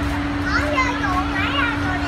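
Young children's high-pitched voices calling out twice, over a steady low hum.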